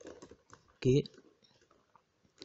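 A few soft computer-keyboard keystrokes in the first half-second or so, then a man says a single short word just under a second in.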